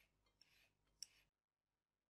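Near silence, with a few faint scrapes of a handheld vegetable peeler on a sweet potato's skin in the first second.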